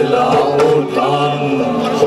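Folk band playing live: a male voice sings a chant-like melody over a low sustained accompaniment.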